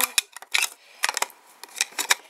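Clear hard-plastic magnetic card holder being handled: a scattered series of short, sharp plastic clicks and taps as a card is fitted into the case.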